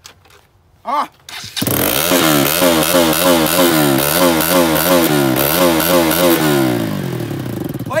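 Bajaj Pulsar NS200's single-cylinder engine starting about a second and a half in and being revved hard in quick blips, about two a second, then dropping back and cutting off near the end.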